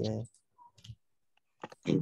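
Participants' voices thanking the teacher, one ending just after the start and another beginning near the end. A few faint short clicks fall in the quiet gap between them.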